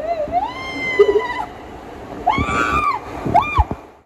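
Three high-pitched, drawn-out vocal cries. The first rises and then holds; the next two arch up and down, and the sound cuts off abruptly at the last one.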